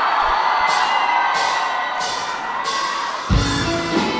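Live band starting a song over an audience cheering and whooping: four evenly spaced cymbal strokes about two-thirds of a second apart, then the drums and bass come in near the end.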